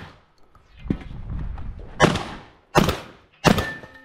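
Mossberg 930 JM Pro 12-gauge semi-automatic shotgun fired three times, starting about halfway in, the shots well under a second apart. A brief ringing tone follows the last shot, with a softer thud about a second in.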